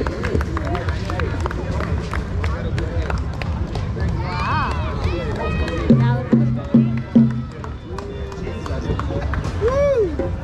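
Outdoor hand-drum music with many sharp strokes and voices of people talking around it. About six seconds in, four short loud low notes sound in quick succession.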